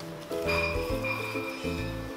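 Background music: a light plucked-string tune over low bass notes that change about every half second, with a high note held for about a second in the middle.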